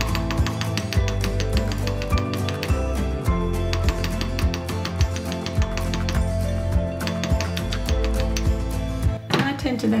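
Quick, light hammer taps of a smooth round-faced hammer on a sterling silver wire spiral lying on a metal bench block, several a second, stopping about nine seconds in. The gentle blows work-harden and flatten the spiral earring. Background music plays under the taps.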